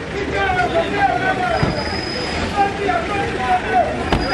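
Cars driving slowly past, a low engine and road rumble, with people talking close by.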